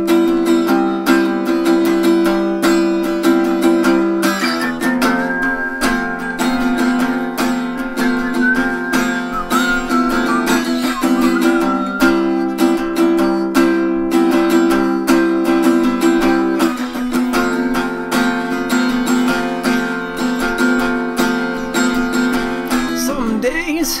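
Acoustic guitar strummed in steady chords as an instrumental break in a folk song, with a thin higher melody line running over the chords through the middle. Singing comes back in right at the end.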